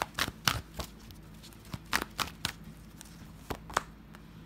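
Oracle cards being shuffled and handled by hand: a series of sharp card snaps and clicks in three short clusters, the last two near the end as a card is drawn and laid down.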